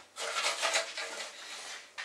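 Air fryer basket of hot chips being handled: a soft, uneven hiss with a few light knocks.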